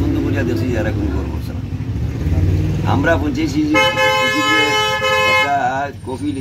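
A vehicle horn sounding one steady blast of about two seconds, starting a little past halfway and cutting off suddenly, over men talking.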